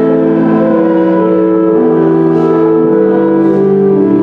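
Church organ playing slow, sustained chords that change every second or so.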